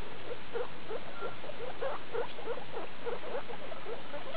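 Skinny (hairless) guinea pigs squeaking softly: a steady run of short rising squeaks, about four or five a second.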